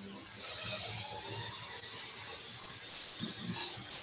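Steady hissing background noise carried over a video-call audio line, starting about half a second in and fading near the end.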